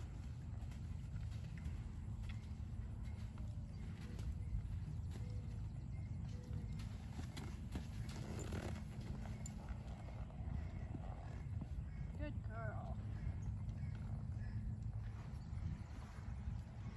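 A short, trembling whinny from a horse or mule about twelve seconds in, over a steady low rumble.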